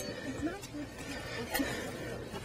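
Quiet background murmur of voices at the dig, with a steady low hum and a single sharp click about one and a half seconds in.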